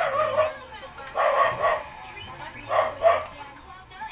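A dog barking, several loud barks in quick bursts, the last two close together near the end.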